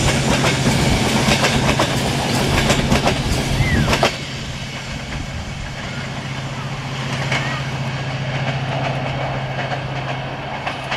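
Diesel-hauled passenger train running past close by, its coach wheels clicking over the rail joints, over a steady low drone. About four seconds in the sound drops abruptly to a quieter, more distant rumble of the train pulling away, with only occasional clicks.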